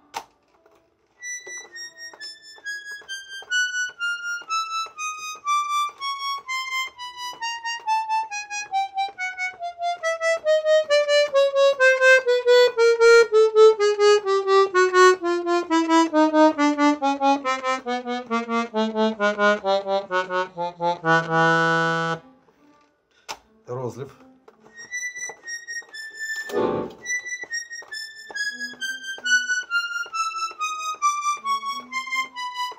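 Royal Standard three-voice button accordion (bayan) playing a slow descending chromatic scale, one note at a time at about two notes a second, on a single reed voice to check each voice of the overhauled, freshly tuned instrument. The run ends on a held chord; after a short pause with a couple of brief knocks, a second descending scale begins.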